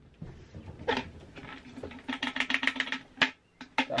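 Empty plastic buckets being handled: a single knock about a second in, then a quick run of light clicks, about ten a second, lasting roughly a second.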